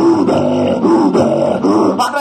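A man's low, rough, guttural voice vocalizing without words into a handheld microphone over a PA. The pitch wavers in a few drawn-out stretches.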